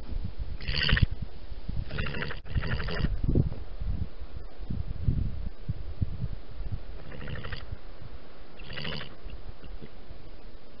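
European badger at its sett giving five short calls made of rapid pulses, over low scuffling and rustling in the earth.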